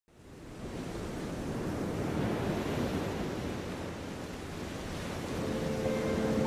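A steady rushing wash like ocean surf, fading in over the first second. Sustained music notes come in near the end.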